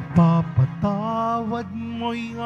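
A slow Tagalog devotional hymn sung with vibrato, the voice moving through several held notes over a sustained accompaniment.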